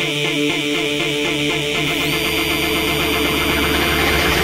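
Electronic pop music with no vocals. A synth line in short stepped notes gives way about a second in to a dense, rising build-up, with high held tones entering about halfway.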